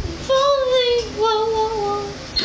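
A young woman singing unaccompanied, holding two long notes, the second lower than the first.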